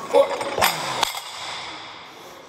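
A short grunt, then two sharp metallic impacts about half a second apart as a pair of iron plate dumbbells is dropped to the floor at the end of a set of shoulder presses.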